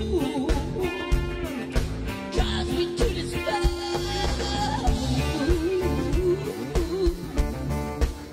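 Live rock band playing a funky song, with a woman singing lead over electric guitar, bass and drums.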